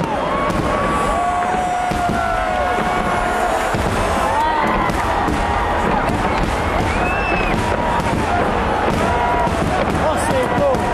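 Aerial fireworks crackling in a dense, unbroken run of small pops, with a crowd's voices rising and falling over them.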